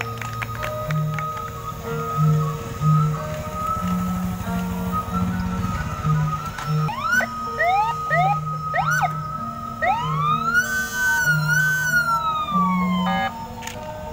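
Motorcycle-mounted electronic siren being tried out: a few quick rising whoops, then one long wail that rises, holds and falls away, over background music.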